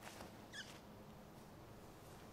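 Near silence: a faint scuff right at the start, then a small bird's single short, high chirp falling in pitch about half a second in.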